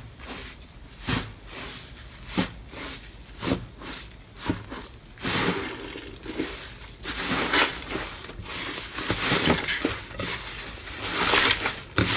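Hands squeezing and tearing a large mound of crumbly 'tofu dregs' slime, making crackly squishing sounds. The squishes come about once a second at first, then run into denser, nearly continuous crackling over the second half.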